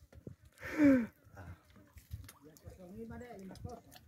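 A man's voice, quiet: a short vocal sound with a falling pitch about a second in, then faint low murmured speech near the end.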